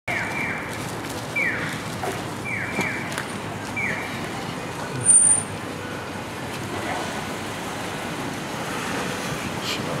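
Street ambience with a steady hum of traffic. In the first four seconds a high chirp that falls in pitch repeats four times, about once every second and a bit, and a brief loud sound comes about five seconds in.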